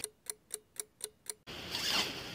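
Clock ticking sound effect, six sharp even ticks at about four a second, followed in the last half second by a zipper being pulled open, the zip of the protesters' tent.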